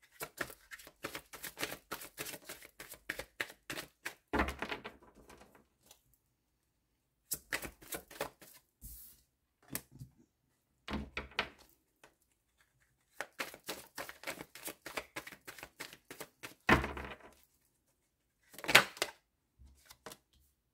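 A deck of oracle cards being hand-shuffled: rapid runs of cards flicking against each other in several bursts with short pauses between, then two louder card slaps near the end.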